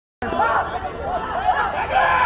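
Indistinct chatter of nearby spectators' voices.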